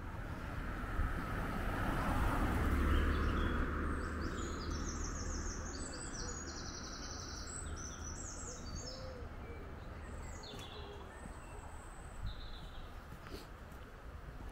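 Woodland songbirds singing: a fast series of high repeated notes from a few seconds in until about halfway, then scattered calls later. Under them is a steady rushing background that swells about two to three seconds in and slowly fades.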